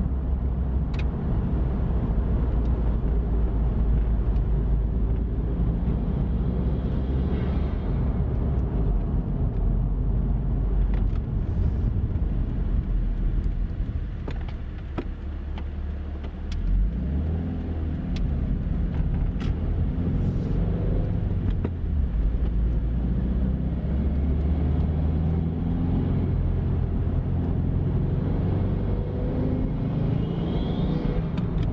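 Subaru WRX's turbocharged flat-four engine, fitted with a COBB Big SF cold air intake, heard from inside the cabin while driving. Steady engine and road noise dips briefly about halfway, then the engine note rises as the car accelerates, and rises again near the end.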